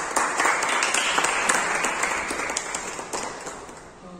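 A group of people applauding, with separate hand claps audible, fading away toward the end.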